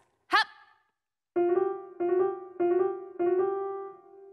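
Keyboard, piano-like in tone, playing the same note four times in a steady beat, about one and a half notes a second, starting about a second in; the last note rings on. It is a short music cue for a running-in-place exercise.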